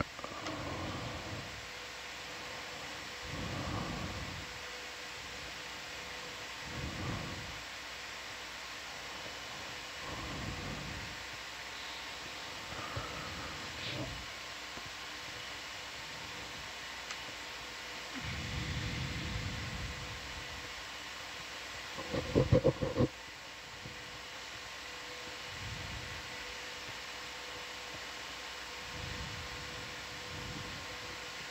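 Steady hiss and electrical hum with a faint steady tone, the room sound of an ROV control room's audio feed. Soft low sounds rise and fall every few seconds, and a brief louder burst comes about 22 seconds in.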